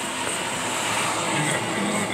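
Car driving in traffic, heard from inside the cabin: steady engine and road noise.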